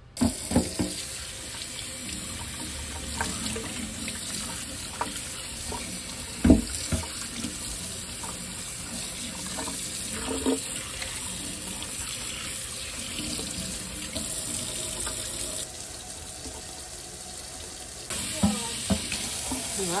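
Kitchen faucet running water into a stainless steel sink as the clear plastic brush-roll cover and brush roll of a Bissell CrossWave are rinsed under it, with occasional knocks as the parts are handled; the loudest knock comes about six seconds in. The water goes quieter for a couple of seconds near the end.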